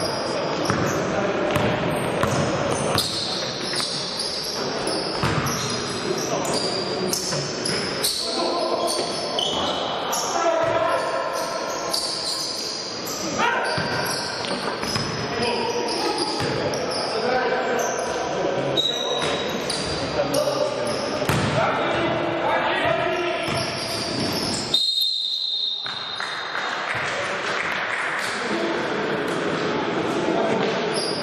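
A basketball bouncing repeatedly on a gym floor during play, with players' voices echoing in a large sports hall. A short, high, steady whistle tone sounds near the end.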